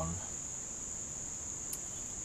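A steady high-pitched whine, unbroken, with one faint tick about three-quarters of the way through.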